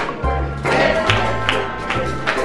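Upbeat music with a steady percussive beat and a moving bass line.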